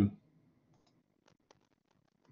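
A series of faint, quick clicks over low room hiss.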